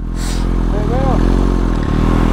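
Motorcycle engine idling steadily at a standstill, a low even rumble, with a short voiced sound from a person about a second in.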